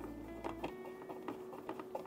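Quiet background music with a few faint clicks and taps of a plastic cover being handled and fitted onto a 3D printer's frame.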